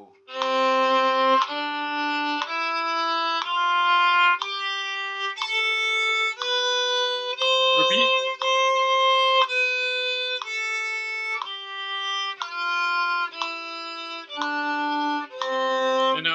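Violin playing a one-octave C major scale up and back down in separate bows, about one quarter note a second, over a steady sustained G drone tone.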